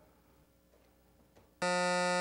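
Quiz-show buzzer sounding once, a steady electronic buzz that starts abruptly near the end after near silence and lasts about a second. It marks time running out on the passed question with no answer given.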